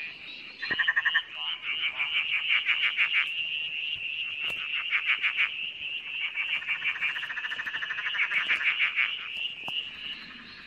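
Tree frogs calling: several long trains of rapid pulsed calls, the first starting about half a second in, over a steady high-pitched chorus.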